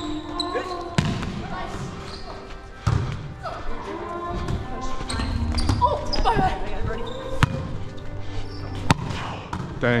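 Indoor volleyball rally in a gym: the ball is struck a few times with sharp hits, shoes squeak and thud on the hardwood floor, and players call out, all echoing in the hall.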